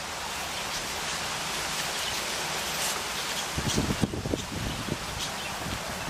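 Outdoor wind: a steady rustling hiss, then from about halfway gusts buffeting the microphone in uneven low rumbles.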